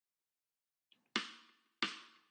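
A backing track starting after silence: two strummed guitar chords, one about a second in and one near the end, each ringing out and fading.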